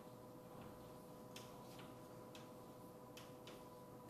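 Chalk writing on a chalkboard: a string of faint, irregularly spaced clicks as the chalk taps and strokes the board, over a steady low hum of room tone.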